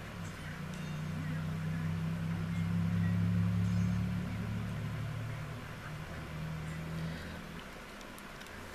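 A low motor drone that swells to its loudest about three seconds in, then fades out near the end.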